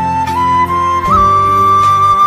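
Flute playing a melody over a backing accompaniment in an instrumental pop-song cover. The melody steps up through a few notes and holds a long note from about a second in.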